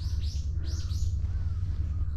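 A small bird calling a quick run of short, high chirps, each falling in pitch, mostly in the first second, over a steady low rumble.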